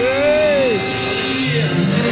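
Live band music holding a sustained chord, with a voice calling out over it briefly near the start.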